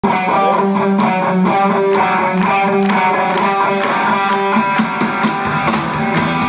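Live rock band playing an instrumental intro: guitar notes over drums, with regular cymbal strikes. Lower notes fill in about four and a half seconds in.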